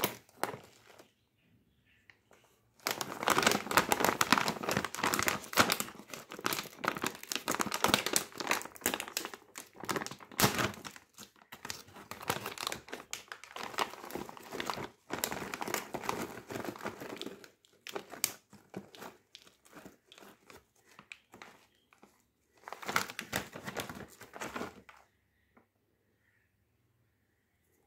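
A foil-lined Doritos Dinamita snack packet crinkling loudly as hands handle it and pull it open. The crinkling comes in a long dense stretch from about three seconds in, thins out to scattered crackles, and has one more short burst near the end.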